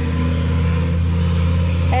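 Steady low motor hum, unchanging in pitch and level.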